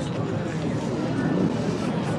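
Outdoor crowd ambience: faint background voices over a steady low rumble.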